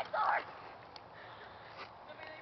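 A man says a couple of words, then faint, even background hiss with two small clicks.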